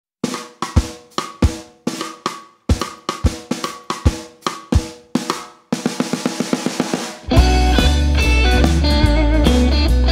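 Psychedelic folk-rock song intro. A drum kit plays alone, a kick-and-snare beat for about five seconds, then a quicker run of even strokes. At about seven seconds bass and guitars come in with the full band.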